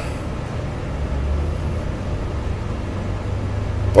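Low, steady background rumble with a faint hum: room noise, no speech.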